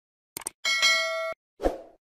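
Subscribe-button animation sound effects: a quick run of mouse clicks, then a bright notification-bell ding that stops abruptly, then a short soft thump near the end.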